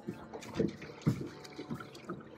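A small chain pickerel splashing at the water's surface in a few short, irregular bursts as it is reeled in on the line, with background music underneath.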